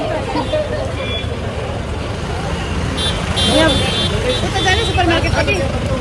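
Busy street traffic: a steady low rumble of vehicle engines, with scattered voices of passers-by and a brief high-pitched tone about three seconds in.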